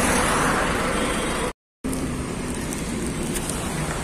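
Steady road traffic noise from passing vehicles, a continuous hiss and rumble without distinct events. It cuts out completely for a split second about a second and a half in, then carries on slightly quieter.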